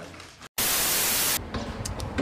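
A burst of static hiss, just under a second long, that starts and stops abruptly right after a brief dropout to silence: a white-noise transition effect at a cut between clips.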